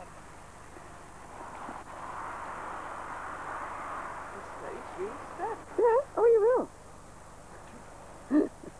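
A person laughing loudly in several short hooting bursts that rise and fall in pitch, past the middle; before that, a soft steady rushing noise.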